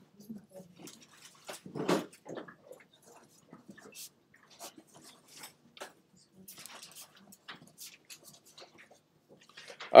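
Marker pen writing on paper: faint, short scratchy strokes and taps as letters and symbols are drawn. A brief low vocal murmur from the writer about two seconds in is the loudest sound.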